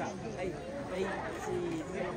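Background chatter of several people talking at once, their voices overlapping with no single speaker standing out.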